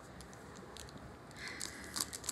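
Faint rustling and a few scattered light clicks of things being handled and moved, with no clear single event.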